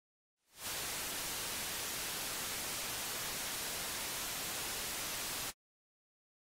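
Steady television static hiss that comes up quickly about half a second in and cuts off suddenly near the end.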